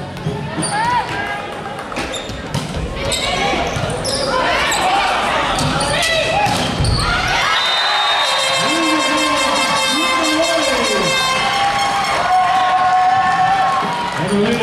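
Indoor volleyball rally: the ball thuds several times off hands and arms during the first half, and players shout and call from about halfway through, all ringing in a large hall.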